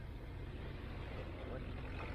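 Steady low engine drone from a distance, which is taken for a riding lawnmower coming closer.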